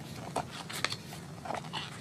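Papers being shuffled and handled at a desk: a few short rustles and taps over a steady low hum.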